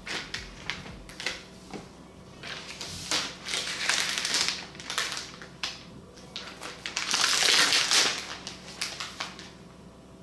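Thin plastic protective wrap being peeled and pulled off a new tablet: a few light clicks of handling, then rustling and crinkling in two longer stretches, the second about seven seconds in.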